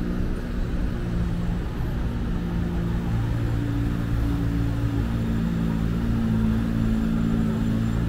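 Road traffic: a steady, low engine rumble from vehicles on a city street, with engine tones holding and shifting slightly in pitch.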